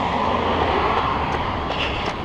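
A motor vehicle passing close by on the road: a steady rush of tyre and engine noise with a low rumble, swelling and then slowly fading.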